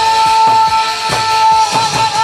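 A woman singing a long held note into a microphone over amplified backing music with a steady beat, typical of a pumba stage performance.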